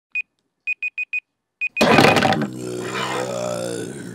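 A digital alarm clock beeping in short high bursts: one beep, then four quick ones, then one more. Less than two seconds in, the beeping is cut off by a loud, long, drawn-out groan from a person.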